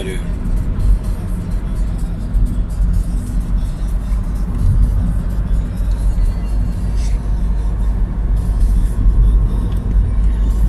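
Steady low rumble of a car's tyres and engine, heard inside the cabin while driving along a highway.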